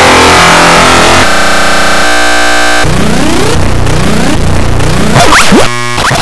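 Loud, heavily distorted and electronically processed audio: a harsh, noisy cacophony that changes abruptly about every second, with many fast rising and falling pitch sweeps in the second half. It drops off suddenly near the end.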